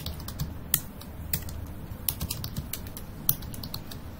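Computer keyboard keys clicking as a terminal command is typed: irregular keystrokes, two of them sharper and louder, about a second in and near the end.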